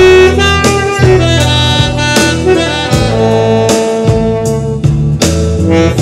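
Selmer Mark VI alto saxophone, fitted with a Vandoren Jumbo Java mouthpiece and a Legere reed, playing a slow melody of held notes over a backing track with bass and drums keeping a steady beat.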